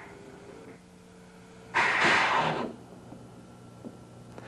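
A short hiss of compressed air from a truck's S-cam air brake system as the brake is worked. It starts abruptly about two seconds in and fades after about a second.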